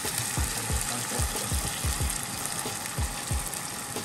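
Coconut milk being poured into a hot pan of sautéed onions, garlic, ginger and long green chilies, sizzling steadily. Soft low pulses come about four or five times a second.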